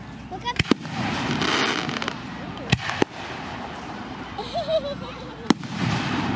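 Fireworks exploding overhead in about five sharp bangs: a quick pair within the first second, two more about a third of a second apart near the middle, and a single one near the end.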